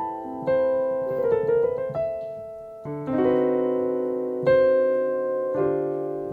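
Piano playing a slow jazz chord progression in rich extended voicings, sustained chords struck about once a second with a quick run of notes about a second in. It moves from an A minor ninth chord to a D minor seventh chord with an added fourth near the end.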